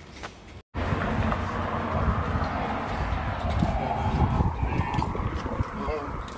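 Wind buffeting a phone's microphone outdoors, an irregular low rumble over general street noise. It follows a brief moment of silence about a second in.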